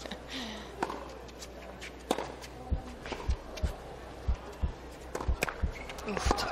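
Tennis rally on a hard court: sharp racket hits on the ball roughly every second or so, over a steady background murmur, with a run of soft low thuds in the second half.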